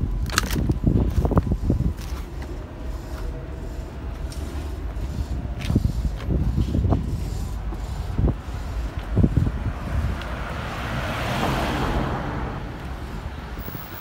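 Street traffic noise with a steady low rumble, a few short knocks, and a vehicle passing that swells and fades about ten to thirteen seconds in.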